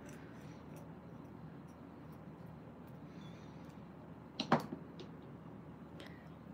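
Quiet room tone: a low steady hum, with one short sharp knock or tap about four and a half seconds in.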